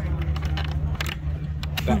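A few small metallic clicks as a steel tie is pushed through a slot in a wool tree shelter, over a steady low hum and faint background voices.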